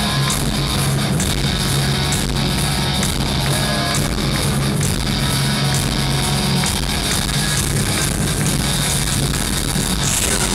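Heavy metal band playing live: two electric guitars over bass and drums, steady and loud, with no singing.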